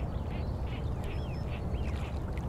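Ducks quacking in a quick series of short calls over a steady low rumble of outdoor ambience.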